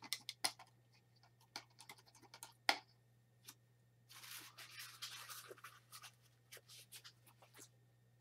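Faint handling sounds of painting supplies on a worktable: scattered light clicks and taps, with a second or so of scratchy rustling about four seconds in.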